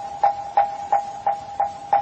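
Moktak (Korean Buddhist wooden fish) struck in an even beat, about three strikes a second, over a steady held tone, keeping time for sutra chanting.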